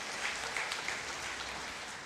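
Audience applauding, a steady, fairly quiet wash of clapping between remarks.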